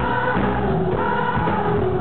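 Live pop band and singers performing: a lead vocal with female backing singers over bass and drums, heard from within the audience.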